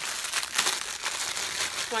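Clear plastic packaging bag around a hair bundle crinkling as it is handled, a steady run of fine crackles.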